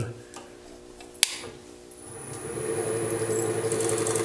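Wood lathe switched on with a sharp click about a second in, then its motor spinning the apple-wood blank up to speed and running with a steady hum and a high whine.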